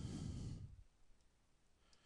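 A man's audible breath into a close microphone, like a sigh, lasting under a second.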